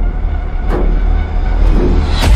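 Trailer sound design: a deep, steady rumble with heavy booming hits about once a second.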